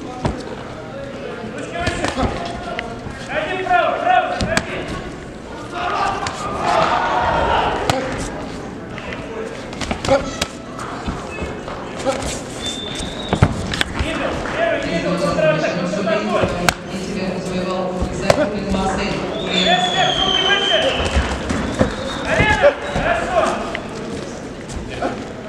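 Boxing gloves and kicks landing in a K-1 kickboxing bout: sharp thuds at irregular intervals, amid shouting voices.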